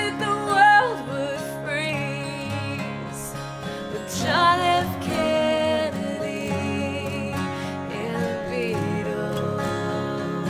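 Three acoustic guitars strummed together under a woman's singing voice, which holds a wavering note about four seconds in.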